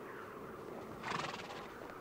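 A horse gives a short whinny about a second in.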